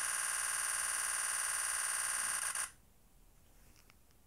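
Nikon Z9's shutter sound repeating rapidly and evenly during a 20-frames-a-second continuous burst with the shutter release held down. It cuts off suddenly about two and a half seconds in as the burst stops.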